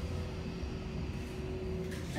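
Mowrey hydraulic elevator car running down its shaft, heard from inside the car: a steady low rumble with a faint steady hum that stops just before the car reaches its floor.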